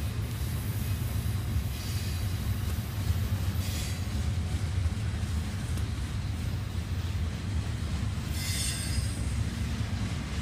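Double-stack intermodal freight train's well cars rolling past with a steady low rumble, with brief high wheel squeals about four seconds in and again near the end.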